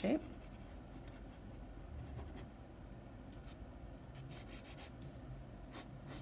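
Pencil sketching on sketchbook paper: quiet scratchy strokes in a few short runs, about a second and a half in, again past four seconds and once more near the end.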